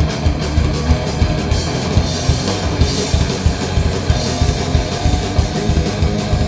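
Thrash metal band playing live: distorted electric guitars and bass over a drum kit keeping a steady, fast beat, with cymbals getting brighter about two seconds in.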